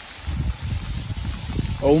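Heavy rain falling, with an irregular low rumbling on the microphone as it is carried along. A man's exclamation starts near the end.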